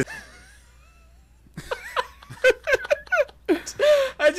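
Men laughing at a joke: faint, breathy laughter at first, then louder broken bursts of laughter from about a second and a half in.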